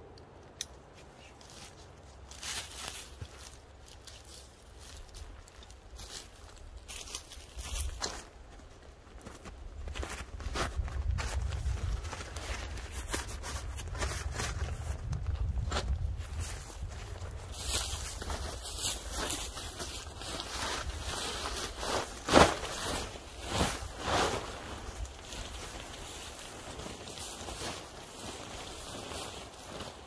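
Camping gear being handled while a hammock camp is set up: rustling fabric and straps with scattered clicks and knocks, the loudest a sharp knock about two-thirds through. A low rumble runs for several seconds in the middle.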